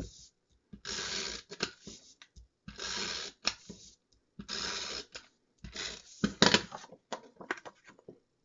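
Tape runner drawn along the back of a sheet of card-making designer paper, laying adhesive: four strokes of about a second each, then a few light clicks near the end as the paper is handled and set down.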